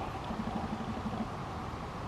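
Labrador retriever growling low and steadily in play while tugging a ball with another dog.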